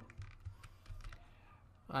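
A few light, scattered computer keyboard keystrokes.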